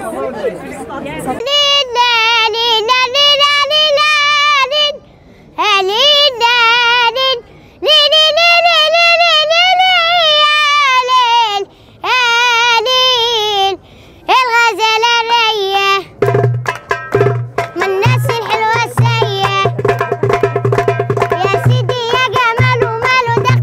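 A single high voice sings a slow melody alone, holding long wavering notes broken by short pauses. About sixteen seconds in, a hand-beaten frame drum joins with a quick steady beat under the voice.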